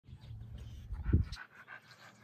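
Dog panting, with a low rumble that peaks about a second in.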